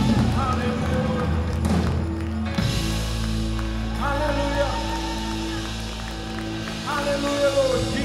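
Live worship band playing a slow song: steady held bass notes that shift about a third of the way in, under a voice singing long phrases.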